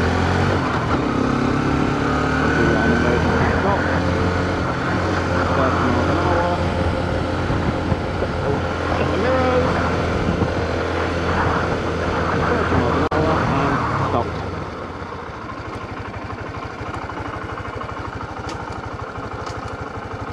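Honda CB125F's air-cooled single-cylinder engine pulling up through the gears to about 30 mph, with wind rush on the microphone. About fourteen seconds in, the throttle shuts and the sound drops suddenly as the bike is pulled up in a practice emergency stop, leaving the engine idling.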